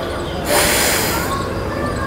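A woman's deep breath in during slow, paced yoga breathing: a breathy hiss that swells about half a second in and then tails off over the next second.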